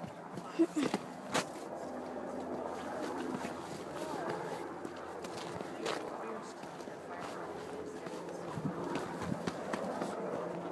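Footsteps and scuffs of hikers on bare rock, with a few sharp knocks in the first second and a half and one more about six seconds in. Faint voices can be heard in the background.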